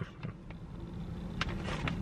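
Clear plastic resealable bag of jerky crinkling in scattered small clicks and crackles as it is tugged at with the teeth, failing to tear open, over a low steady hum.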